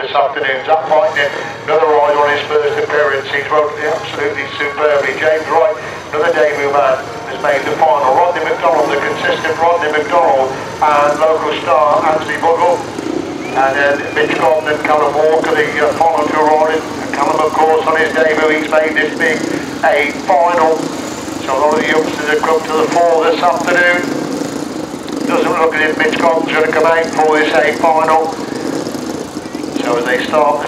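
A man talking almost without pause, with the engines of solo sand-racing motorcycles running steadily underneath.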